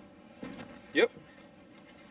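A shoe stepping onto an aluminium RV entry step braced by a Solid Stance stabilizer: a short, soft scuff about half a second in.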